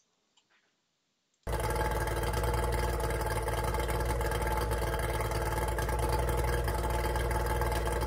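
Near silence for about a second and a half. Then a Yamaha 30D 30 hp three-cylinder two-stroke outboard runs steadily at low throttle, warmed up, while its pick-up timing is set at 2 degrees after top dead centre.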